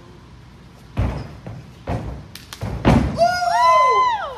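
Thuds of a child's flip off a man's shoulders landing on a gym mat floor, about a second in, then two more thuds, the last the loudest. Near the end comes a loud, high-pitched excited yell that rises and then falls away.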